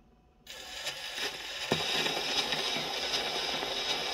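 The needle of a Paragon Model 90 acoustic phonograph's reproducer is set down on a spinning 78 rpm shellac record about half a second in. Steady surface hiss and crackle with occasional clicks follow as it runs through the lead-in groove, before the music begins.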